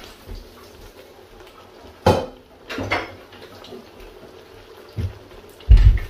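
Metal cookware being handled while boiled spaghetti is drained: a few sharp clanks about two and three seconds in, then a heavy low thump near the end as the pan of drained spaghetti is brought over the pot and tipped in.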